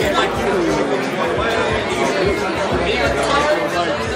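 Diners' chatter in a busy restaurant: several voices talking at once at a steady level.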